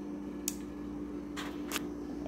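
A steady low hum with a few faint sharp clicks: one about half a second in and two close together near the end.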